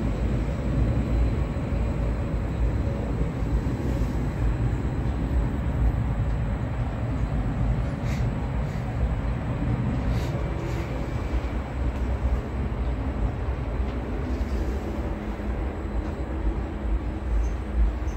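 Steady low rumble inside an enclosed Ferris wheel gondola, with a few faint clicks.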